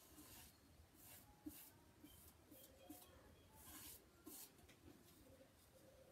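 Near silence, with a few faint soft swishes of a paintbrush laying a clear water-based top coat over decoupage paper as a sealing coat.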